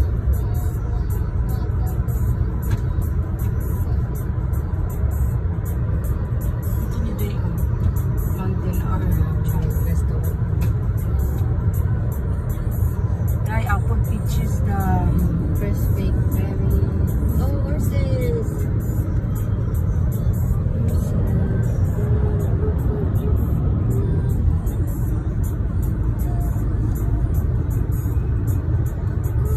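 Steady low rumble of tyre and engine noise inside a car cruising on a highway. Faint voices or music rise briefly about halfway through.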